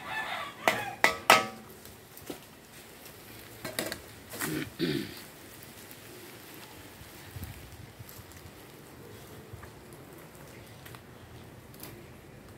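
Metal spatulas clanking and scraping against a steel wok of frying rice, several sharp strikes in the first second and a half. About four to five seconds in, chickens call briefly; after that only a low, steady background remains.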